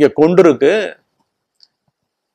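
A man speaking for about a second, then silence.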